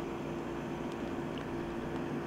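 Room air conditioner running: an even hiss with a steady hum underneath.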